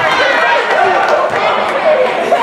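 Basketball game in a gym: indistinct, overlapping shouting from players and spectators, echoing in the hall, with a basketball being dribbled on the hardwood floor.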